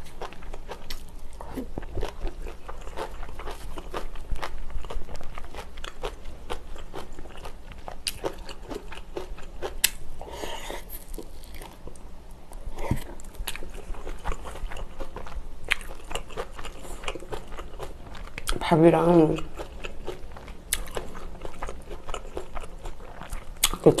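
Close-miked chewing and biting of food, with many small wet mouth clicks; a cream-cheese-filled hamburg ball is bitten and chewed about halfway through. A short hummed 'mm' comes about three-quarters of the way through.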